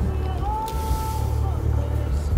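Low, steady rumble of a car moving slowly, heard from inside the cabin, with music playing over it; a voice holds one sung note for about a second from half a second in.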